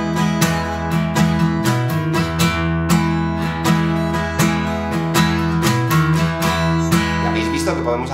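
Taylor cutaway acoustic guitar strummed in a steady rhythmic pattern, ringing full five- and six-note chords that change a few times.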